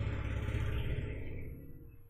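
A steady low rumble with a noisy hiss above it, fading away about a second and a half in.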